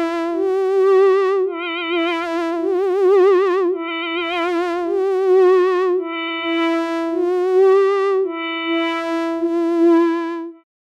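Buchla modular synthesizer drone holding one pitch, its tone colour changing every second or two as the 292e gates fade from one oscillator to the next: the 281e-driven scanner mixing the 259e and 258v oscillators. Some passages wobble quickly in pitch, and a faint hiss swells in and out.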